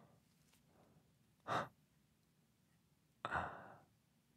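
A man breathing: a quick sharp breath about a second and a half in, then a longer sighing breath that starts sharply near the end.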